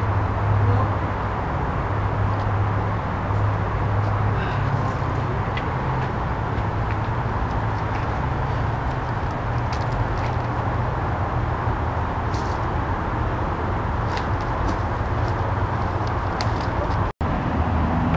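Steady outdoor background noise with a low rumble and a few faint clicks, broken by a brief dropout near the end.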